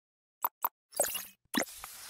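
Sound effects of an animated logo intro: two quick pops close together, then two sharper hits about a second and a second and a half in, each fading out.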